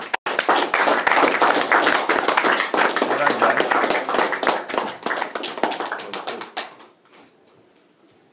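A small audience clapping, loud and close, dying away after about six and a half seconds.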